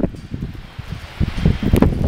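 Wind buffeting the microphone, with irregular low thuds of a horse's hooves on soft ground as it lopes, and a sharp click a little under two seconds in.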